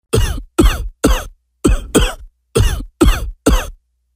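A man coughing repeatedly: about eight short, separate coughs, each dropping in pitch, with brief silences between them.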